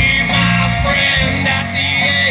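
Live band playing amplified music: electric guitars over bass and a drum kit, with a steady beat.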